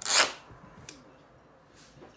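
Grey cloth duct tape ripped off the roll in one quick pull: a loud, short tearing sound. It is followed by a light click and a softer rustle near the end.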